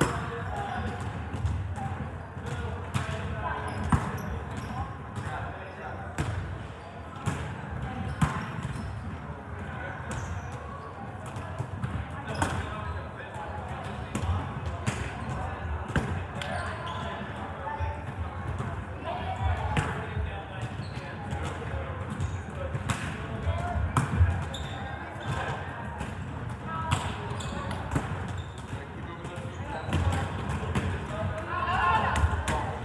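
Volleyballs being passed, hit and bouncing on a hardwood gym floor: sharp, irregular smacks, a few much louder than the rest, over steady indistinct chatter of many players.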